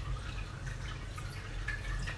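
Quiet room background picked up by a phone: a low steady hum with a few faint small ticks.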